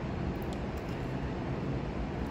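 Steady background noise, an even hiss with a low rumble, with a few faint light clicks about half a second in.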